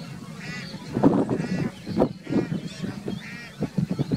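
Geese in a flock honking, about five short nasal calls spread across a few seconds.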